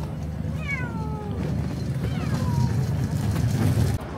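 A cat meowing twice, each a drawn-out cry falling in pitch, over a steady low hum.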